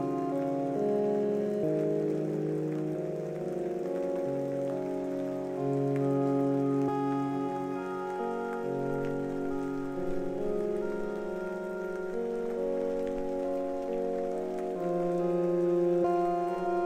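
Rain sound effect: steady rain, mixed with slow, soft background music of held notes that change every second or two.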